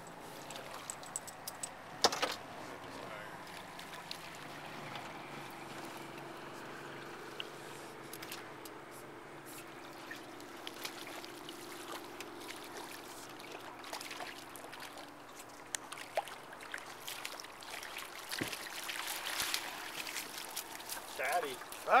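River water running and lapping against a drift boat while a trout is played and brought to the net. A sharp knock comes about two seconds in, and the clicks and handling knocks grow busier near the end as the fish is netted.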